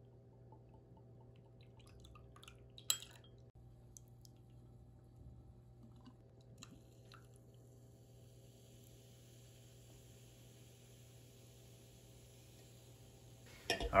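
Drinks being poured over ice spheres in crystal tumblers: a single sharp clink about three seconds in and a few faint ticks and drips, then, from about seven seconds in, a soft fizzing hiss as cream soda is poured over the whiskey. A steady low hum runs underneath, and the whole is quiet.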